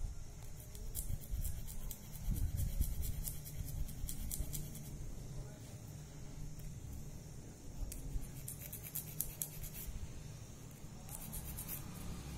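Coarse side of an emery nail file rasping in quick strokes against a natural fingernail, filing down its corner. The strokes come in two spells with a short pause midway.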